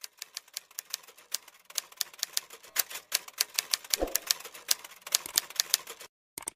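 Typewriter-style keystroke clicks in a quick, uneven run, several a second, with one deeper thump about four seconds in.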